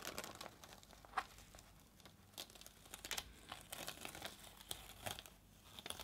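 Faint, scattered crinkling and small crackles of a frisket-paper mask being picked up and peeled off a canvas by hand.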